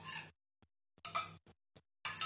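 A few brief, faint scrapes and clinks of a metal spoon stirring in a small metal cup, with dead silence between them.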